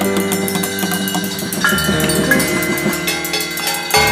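Free-improvised piano and percussion duet: piano notes under quick stick strikes on small cymbals and drums, with ringing metallic tones hanging on between the hits.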